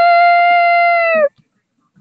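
A person's long 'woo!' cheer that slides up in pitch, holds one high note and cuts off sharply about a second and a quarter in.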